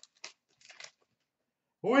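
A few brief, faint crinkles of a trading-card pack wrapper being handled as the cards are drawn out, in the first second, then quiet.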